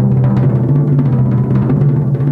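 A fast, even roll with sticks on a tom-tom, played loud and steady so that it blurs into one sustained, ringing low drum tone.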